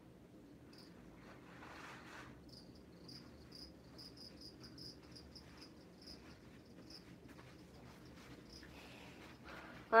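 A cricket chirping faintly: a run of short, high chirps at a steady pace of a few a second. A brief faint rush of noise comes about two seconds in.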